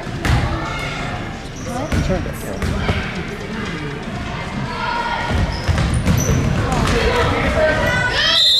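A basketball bouncing a few times on a hardwood gym floor as the free-throw shooter dribbles before the shot, with voices calling out around it.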